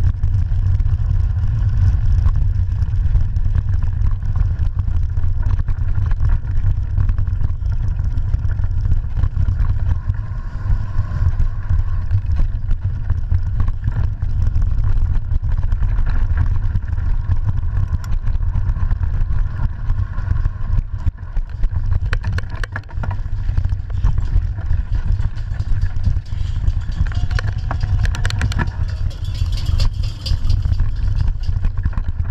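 Mountain bike riding fast over a dirt trail, heard through a bike-mounted action camera: a steady deep rumble of wind and vibration on the microphone, with scattered clatter and ticks from the bike jolting over bumps.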